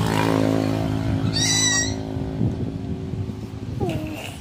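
A short, high-pitched animal call about a second and a half in, over a steady low motor-like hum that fades out about halfway through.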